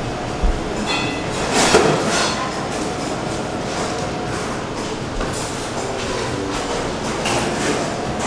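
Steady background noise inside a busy donut shop, with a short ring about a second in and a louder hiss just after it.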